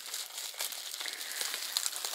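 Plastic packaging crinkling and rustling as it is handled and unwrapped by hand, with small crackles throughout.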